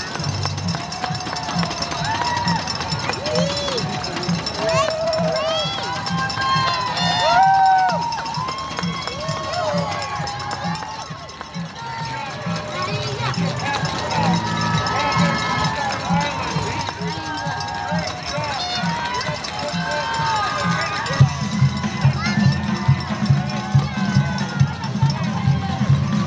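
Roadside spectators cheering and shouting for passing marathon runners, many voices overlapping, over a steady low rhythmic thumping that grows louder near the end.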